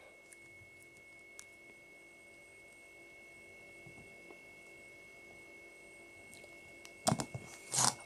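Quiet room tone with a faint steady high whine, a few soft isolated clicks, and a short cluster of louder knocks and handling noise near the end as a smartphone is held and its side buttons pressed.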